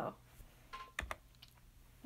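Quiet clicks of a computer key being pressed about a second in, a quick pair, as the presentation is advanced to the next slide.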